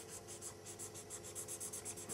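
Marker pen scratching on sketchbook paper in quick, even back-and-forth colouring strokes, about seven a second, faint.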